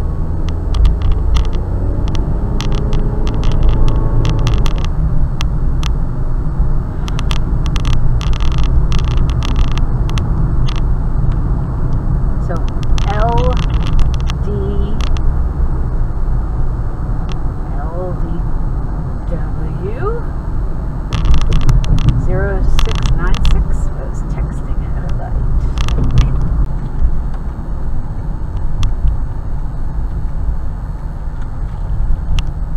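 Engine and road rumble heard inside a moving car's cabin. In the first few seconds the engine note rises as the car pulls away and gathers speed, and short knocks and clicks come through now and then.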